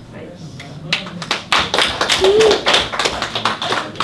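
Audience applauding, the clapping starting about a second in, with voices among it.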